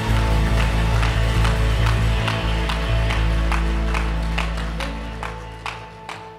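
Live worship band's final chord on electric guitars and bass, held and fading out, over an even beat of sharp taps about two and a half a second that thin out toward the end.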